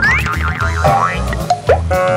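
Upbeat background music with a steady beat, overlaid with a cartoon sound effect: a quick rising whistle-like glide, then a fast wobbling boing, and another rising glide about a second in.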